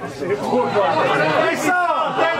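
Several men's voices calling and shouting over one another, loud from the start.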